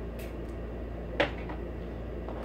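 A single short knock about a second in, over a steady low room hum.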